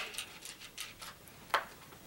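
Small handling taps and one sharp click about one and a half seconds in, as the front grip panel is fitted onto the bow's riser.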